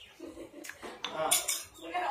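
A metal spoon clinking and scraping against a small plate as food is scooped up: a couple of light clinks, then a brief scrape about halfway through.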